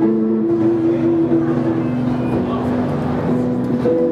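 Supro electric guitar played through a Keeley Eccos delay/looper pedal: a few long held notes that ring on and overlap, with new notes coming in near the end.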